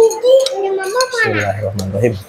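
Metal spoon and fork clinking and scraping against a ceramic bowl while cutting a beef-tendon meatball in broth, with a few sharp clinks.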